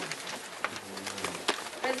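A low, faint voice murmuring in a small room, with a few light clicks.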